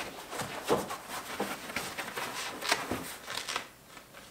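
Cut pieces of rifle-case foam rubbing and scraping against each other as a cut-out section is pulled free of the foam block: an irregular run of friction sounds with a few sharper scrapes.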